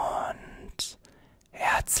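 A man's soft, whispery speech close to the microphone: a short spoken sound at the start, a brief high hiss just under a second in, a short pause, then speech again near the end.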